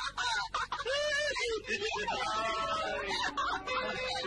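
Film soundtrack: a run of short calls that rise and fall in pitch in the first half, then background music with held instrumental notes from about halfway.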